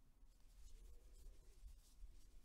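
Near silence, with faint soft rustles of cotton yarn being drawn through the stitches by a crochet hook during double crochet, over a low steady hum.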